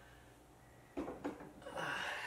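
A man's short laugh: two brief voiced bursts about a second in, then a breathy exhale that swells near the end.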